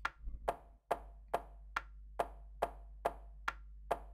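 Software metronome clicking on the beat at 140 BPM, about two clicks a second, evenly spaced sharp pings, as the drum sampler's record mode counts in.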